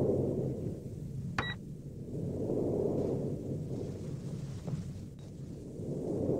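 Sci-fi spaceship ambience: a steady low hum with a rumble that swells and fades about every three seconds, and one short electronic computer beep about one and a half seconds in.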